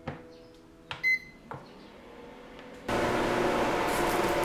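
Buttons clicking on a rice cooker's control panel and one short electronic beep as it is set to cook. Near the end a steady hiss cuts in abruptly.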